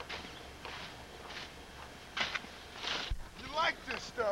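Irregular crunching and scraping in packed snow, in short bursts about every half second to a second. Voices begin in the last half second.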